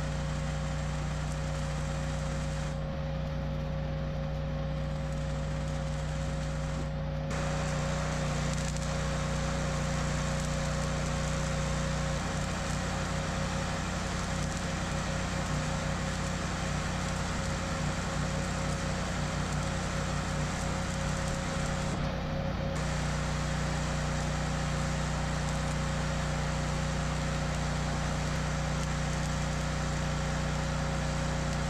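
Electric arc welding on steel: the arc's steady crackling hiss, which breaks off for a few seconds near the start and briefly about two-thirds through. A steady engine drone runs beneath it.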